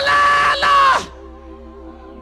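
A loud, high, held shout from one voice over soft sustained music chords, in two parts with a short break, cutting off about a second in; the music carries on quietly after.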